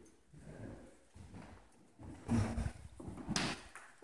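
Footsteps on a wooden floor: a few irregular thuds about a second apart, the loudest just past halfway through.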